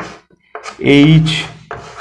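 Chalk scratching and rubbing on a chalkboard as a formula is written, with a man's voice in the middle of it.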